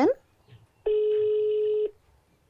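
Mobile phone on loudspeaker playing a ringback tone: one steady ring tone about a second long, starting and stopping cleanly, the sign that the number dialled is ringing at the other end.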